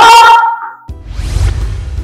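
A woman's loud, drawn-out shout, then background music comes in about a second in, with a deep bass.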